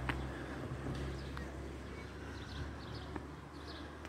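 Quiet outdoor ambience with a few faint bird chirps. A low rumble fades away in the first half second.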